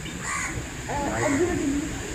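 A short harsh bird call near the start, then low voices in the background.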